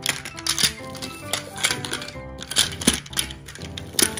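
Background music with held notes, over a string of sharp plastic clicks and taps from a plastic Plarail toy locomotive being handled.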